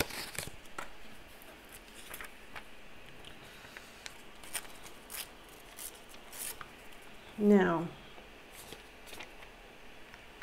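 A piece of dictionary-page paper being handled and torn by hand, in short scattered crackles and rips. About three-quarters of the way through comes a brief falling vocal sound.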